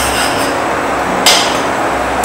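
Syrup boiling in a stainless steel saucepan, a steady bubbling, with one sharp metal clink of the spoon against the pan about a second and a quarter in.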